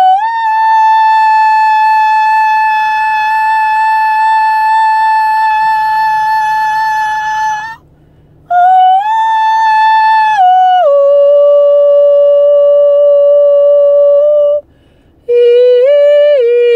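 A woman's voice singing long, steady, high wordless notes, each held for several seconds with a slight scoop up at the start, separated by short pauses for breath. The first note is held about seven seconds. After a pause the voice rises to a similar note, then steps down to a lower one held for about four seconds. Another note begins near the end.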